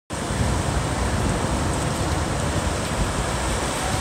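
Ocean surf breaking and washing onto a beach, a steady rushing noise, with wind rumbling on the microphone.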